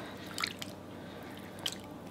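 Red silicone spatula stirring partly melted almond bark and evaporated milk in a glass batter bowl: soft, wet squishing, with two brief sharp clicks about half a second in and near the end.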